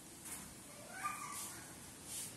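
A short animal cry about a second in, rising and then falling in pitch, over faint room noise.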